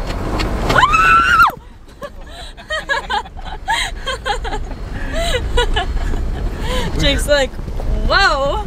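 Voices exclaiming: a loud high-pitched yell that rises and breaks off abruptly about a second and a half in, then scattered short calls and chatter, over a vehicle's steady low running rumble.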